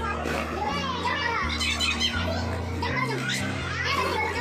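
Children's voices calling out at play, over background music with a bass line of held low notes.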